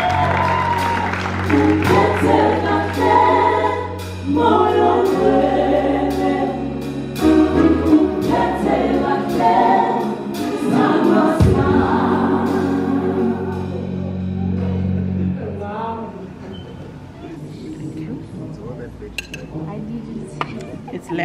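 Live gospel song from a band and singers: several voices sing over sustained bass and keyboard chords with a light beat. The music dies away about three-quarters of the way through.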